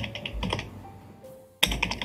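Typing on a computer keyboard: a quick run of key clicks that thins out and stops about a second in, then starts again sharply near the end.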